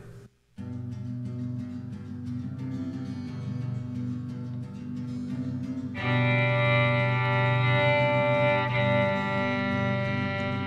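Indie folk band's instrumental intro: guitars, bass and a bowed violin holding sustained notes, starting just after a brief silence and growing louder and fuller about six seconds in.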